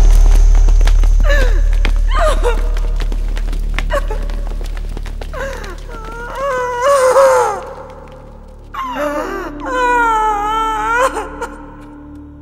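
A woman's anguished wailing cries: a few short cries, then longer drawn-out wails, the last held and wavering for about two seconds near the end. Underneath, a deep low rumble fades away over the first several seconds.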